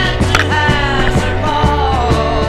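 Background music with a steady beat and a gliding melody line.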